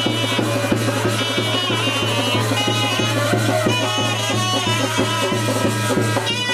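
Live traditional ritual band music: a wind instrument such as a saxophone plays a bending, ornamented melody over steady, even drumming on hand-and-stick drums, with a continuous low drone underneath.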